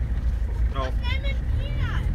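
Steady low rumble of a vehicle's engine and road noise, heard from inside the cabin.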